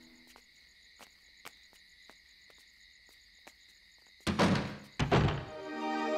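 Faint, steady high chirring of night insects, then two heavy thuds about a second apart near the end. Music comes in straight after them.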